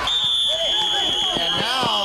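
Football official's whistle blown in one long, steady, high-pitched blast, whistling the play dead after a fumble.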